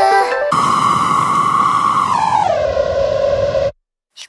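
Electronic music: the melody gives way to a held synthesizer tone over a hiss of noise. About two seconds in the tone slides down in pitch, then it cuts off suddenly near the end.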